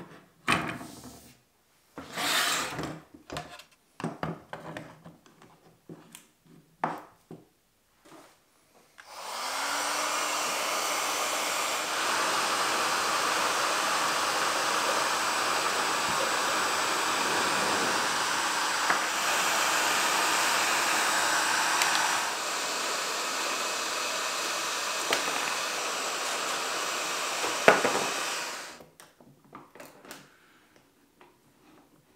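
Heat gun blowing hot air at a computer motherboard to soften its solder so the components can be pulled off. It starts about nine seconds in, its motor whine rising briefly as it spins up, runs steadily for about twenty seconds and cuts off near the end. Before it starts there are scattered short clicks and knocks from handling the board, and there is a sharp snap shortly before it stops.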